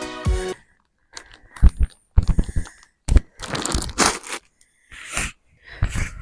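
A large plastic sack of multi-purpose compost rustling and crunching in irregular bursts as it is carried and dropped onto the lawn, some bursts with a dull thud. A music track cuts off about half a second in.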